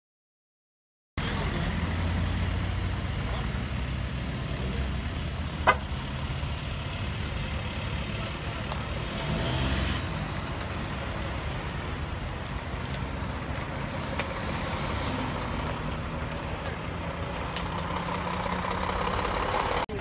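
Vehicle engine idling, a steady low rumble that comes in after about a second of silence, with one sharp click about six seconds in.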